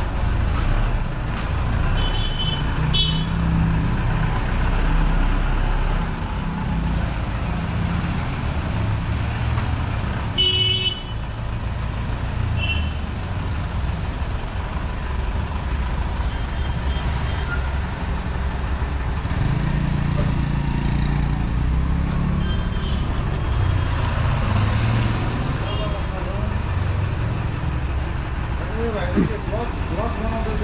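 Steady engine and road rumble of a vehicle moving through city traffic, with short horn toots sounding a few times, the clearest about a third of the way in.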